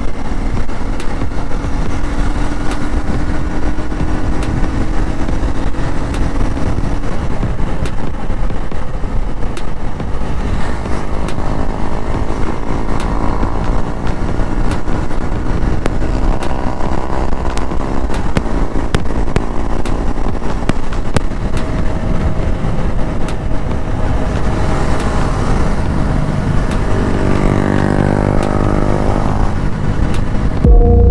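KTM Duke's single-cylinder engine running at road speed, heard from on the bike with wind rushing over the microphone. The engine note climbs in pitch a few times as it accelerates, then falls away near the end as the bike slows.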